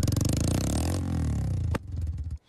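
Motorcycle engine running, heard close to its exhaust pipe. Its pitch dips and climbs again in the middle, and it drops off with a sharp click near the end.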